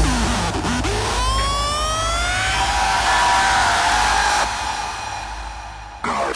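Hardstyle electronic music breakdown: the kick drum stops, and a siren-like synth sweep rises in pitch for about two seconds, holds, then fades away near the end.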